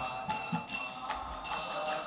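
Brass hand cymbals (kartals) struck in a steady beat, about two and a half ringing strikes a second, keeping time between sung lines of a devotional prayer.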